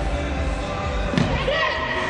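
A soccer ball struck once about a second in, a single sharp thud in a large indoor arena, over spectators' and players' voices.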